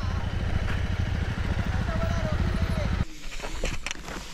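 Motorcycle engine running at low speed with a rapid, even low throb, which cuts off abruptly about three seconds in as the engine is switched off.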